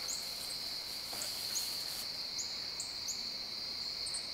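Outdoor insect chorus: a steady, high-pitched trill like crickets, with short high chirps repeating about every half second.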